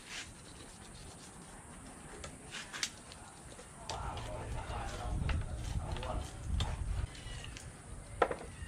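A knife slicing a barracuda fillet away along the backbone on a wooden board, with faint scraping and clicks, then louder rustling and handling as the fillet is pulled free from about four seconds in to about seven.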